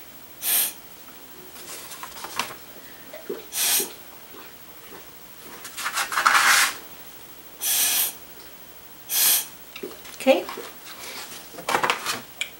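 Short puffs of breath blown through a drinking straw onto wet watercolour paint, driving the paint out in streaks: about five separate hissing blows a second or two apart, one near the middle lasting a little longer.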